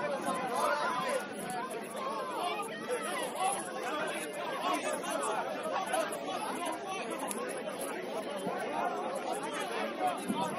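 Many people talking at once on an outdoor sports field: overlapping chatter of players and onlookers, with no single voice standing out.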